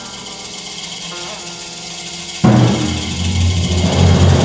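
Film score music: held pitched notes with small sliding bends, then about two and a half seconds in a loud, deep drum roll comes in suddenly and keeps going.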